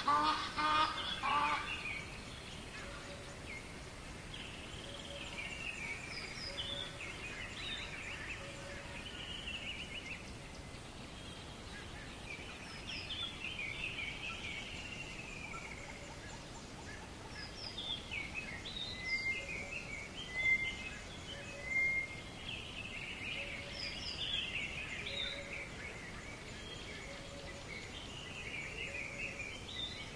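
Birds calling in short, repeated chirping and warbling phrases over a steady background hiss, with a few louder calls about two-thirds of the way through.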